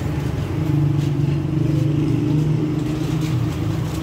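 An engine running steadily at idle, a low even hum with its overtones.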